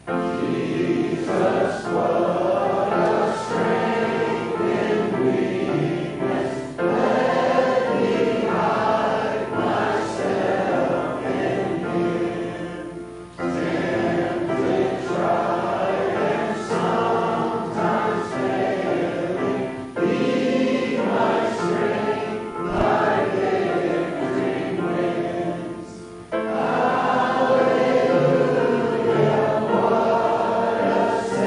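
Church congregation singing the second verse of a hymn together, in phrases of about six seconds with short breaks between.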